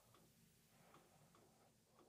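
Near silence: room tone with faint, evenly spaced ticks, a little over two a second.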